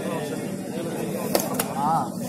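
Several voices calling and shouting over one another during a kabaddi raid, with two sharp cracks close together about a second and a half in.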